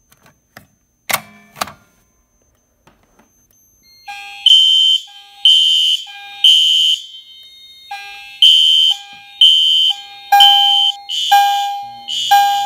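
A Notifier BG-10 manual pull station is pulled with a couple of sharp clacks, and a few seconds later a fire alarm horn strobe starts sounding the temporal-three evacuation pattern: three half-second blasts, a short pause, then three more. This is the system going into alarm from the pulled station.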